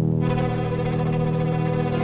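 Background film music: a held, dense chord on a distorted electric guitar, growing brighter a moment after it starts.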